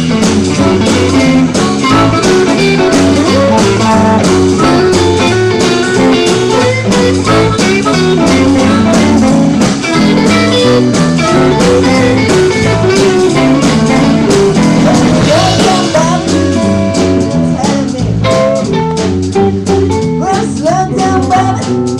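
Live blues band playing: a harmonica played into the vocal microphone, over two electric guitars and bass guitar.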